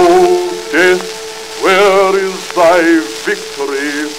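Early gramophone recording of a man singing a sentimental song. His held notes waver with vibrato over a sustained accompaniment, and the record's surface crackle runs underneath.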